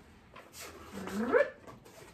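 A dog giving a single whine about a second in, starting low and sliding upward in pitch.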